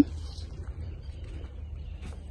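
Quiet outdoor background: a steady low rumble with nothing distinct standing out.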